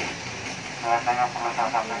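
A steady low background hum, then from about a second in a person speaking Indonesian over it.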